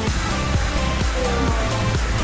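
Electronic dance background music with a steady beat and sustained bass notes.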